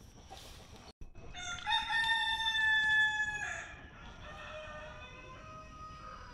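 A rooster crowing: one long, loud crow of about two seconds, followed by fainter, lower calls near the end.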